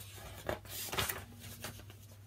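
Paper page of a picture book being turned by hand: a soft rustle with a couple of short crisp flicks, about half a second and a second in.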